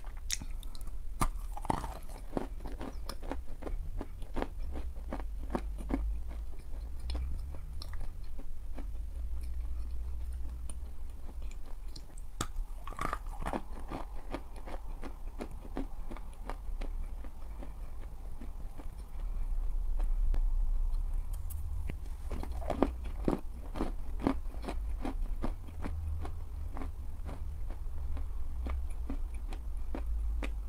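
Close-miked mouth sounds of eating a dense pressed chalk puck: crisp crunching bites and chewing with many small clicks. The crunching comes in denser flurries about two seconds in, about thirteen seconds in, and again around twenty-two to twenty-four seconds.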